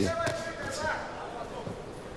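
Thuds of boxing punches landing, a few in quick succession near the start, under a shout and voices from the arena crowd.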